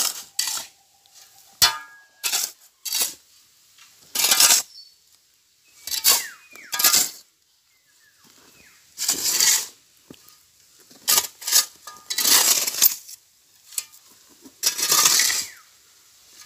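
Metal shovels scraping and scooping through a gravel, sand and cement mix on bare ground as it is mixed by hand, in a dozen or so irregular short strokes.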